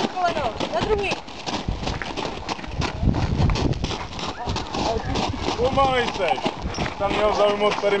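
Indistinct shouted voices over a run of irregular sharp clicks and knocks, with a brief low rumble about three seconds in.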